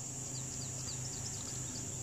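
Steady high-pitched drone of crickets or similar insects, with a run of faint short chirps in the first second or so and a low steady hum underneath.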